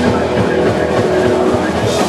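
Live hardcore punk band with loud distorted electric guitars holding sustained, droning chords.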